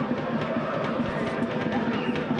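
Stadium crowd noise at a football match: a steady hubbub of many voices with faint singing in it.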